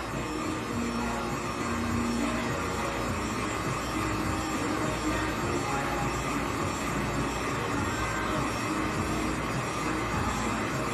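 Handheld heat gun blowing steadily at a glitter tumbler, a constant even whoosh of its fan and hot air.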